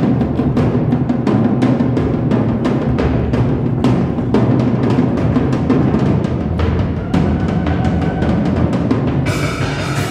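Loud battle music of rapid, heavy drumbeats on timpani-like drums over a steady low rumble, with a brighter sustained layer coming in near the end.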